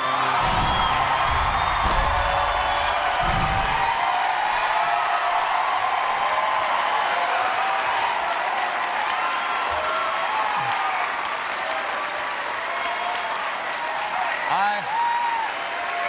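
Studio audience applauding and cheering, with a musical sting over the first four seconds or so.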